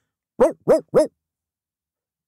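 Three quick barks in a row, each a short call that rises and falls in pitch: a dog barking, as the story has just told.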